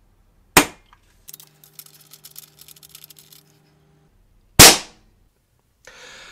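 An air gun fitted with a moderator is fired twice, about four seconds apart, to show how much the silencer quietens it. The second crack is louder and rings slightly longer than the first, and faint clicks and a low hum lie between them.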